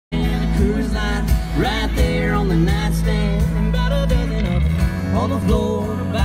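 Live country band playing a song through a stage sound system: male lead vocal over electric and acoustic guitars, bass and drums.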